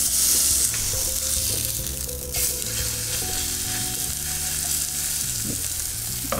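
Pork patty wrapped in sheep's caul fat sizzling as it fries in olive oil in a frying pan. The sizzle swells in the first half-second and again about two and a half seconds in.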